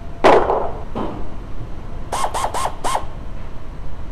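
Hands-on work under a lifted car: a loud sharp clatter, a lighter knock, then four short squeaks in quick succession.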